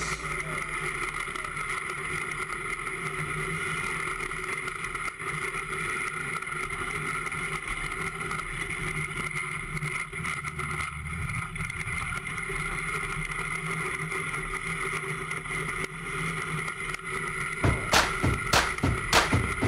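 Iceboat runners sliding over the ice at speed, a steady hum and hiss.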